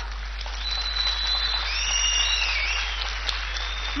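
Audience applauding steadily. A couple of thin high tones glide up and down in the middle.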